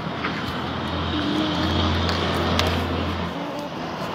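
A passing motor vehicle's low engine hum, swelling over about three seconds and then dropping away shortly before the end.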